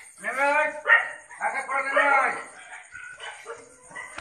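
Two long, drawn-out shouts from a raised human voice, each rising and then falling in pitch, followed by quieter, broken voices.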